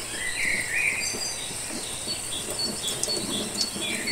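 Tap water running into a plastic sprouting tray of clover sprouts over a stainless steel kitchen sink, giving the sprouts a quick rinse. A few short high chirps sound in the first second.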